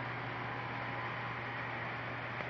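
Steady low hum with an even hiss from HO scale model trains running on the layout.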